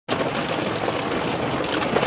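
Heavy rain, possibly mixed with hail, falling on a car's roof and windshield as a dense, steady patter, heard from inside the cabin.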